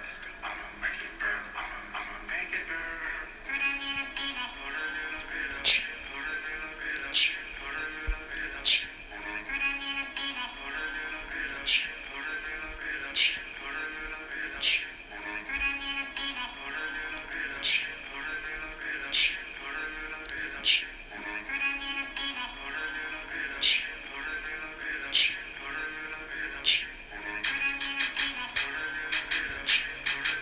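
A song plays: a beat with a sharp percussion hit about every second and a half, under a vocal that repeats a short hook line over and over.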